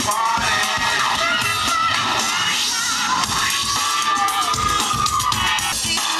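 Recorded music played loudly over loudspeakers, with a melody line that slides up and down in pitch.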